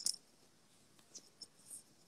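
Faint handling noise from a wired earphone: a short scratchy rub right at the start as the earbud is adjusted at the ear, then a few soft ticks and rustles.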